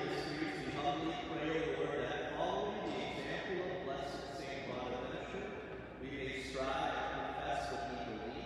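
A priest's voice praying aloud.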